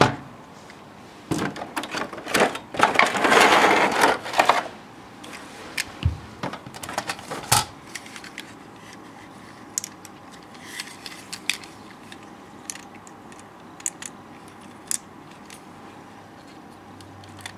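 Clear plastic blister packaging crinkling and rustling for about three seconds, then scattered small clicks and taps as the VF-1A Valkyrie figure's parts are handled.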